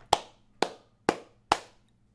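A man clapping his hands four times, evenly, about two claps a second.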